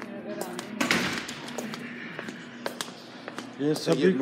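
Phone microphone being handled, with scattered clicks and knocks throughout, and a person's voice starting near the end.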